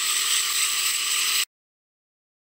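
Double-stack container freight train passing close by, its cars rattling and clattering, sounding thin and hissy with almost no low rumble. The sound cuts off suddenly about one and a half seconds in.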